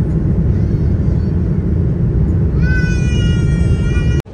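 Steady jet airliner cabin noise heard through the window seat beside the engine during descent: a loud, even low rumble. About two and a half seconds in, a high whining tone with overtones joins, dipping slightly in pitch at first, and runs on to the end.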